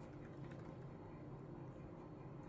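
Faint light tapping and clicking on a hard tabletop.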